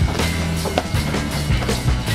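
Background rock music with a steady beat, bass and drums.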